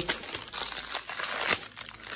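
Crinkling of a fortune cookie's plastic wrapper being torn open, with a sharp snap about one and a half seconds in as the cookie is broken apart.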